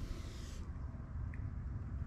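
Faint steady low hum with a little hiss: background room tone in a pause between words.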